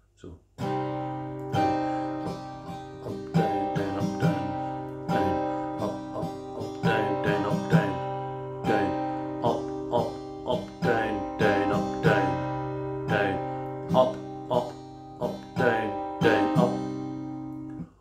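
Acoustic guitar with a capo on the third fret, strummed steadily in a down-down-up-up-up-down-down-up pattern. It starts about half a second in and stops just before the end.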